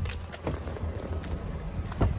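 Wind buffeting the microphone as a low, steady rumble, with a few faint knocks near the start and near the end.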